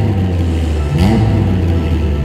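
Alfa Romeo car engine revved in two quick blips, one at the start and one about a second in, each a fast rise in pitch over a deep, steady engine rumble.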